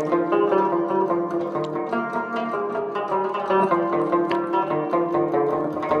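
Solo rubab, the short-necked Afghan/Pashtun lute, played with a quick, continuous run of plucked melody notes.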